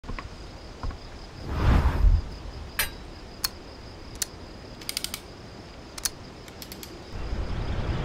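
Sharp metallic clicks of a Manfrotto 645 FAST carbon twin-leg tripod's leg locks and fluid head controls being snapped, about a dozen spread over several seconds, some in quick clusters. They follow a soft whoosh with low thuds, and a rising whoosh starts to build near the end.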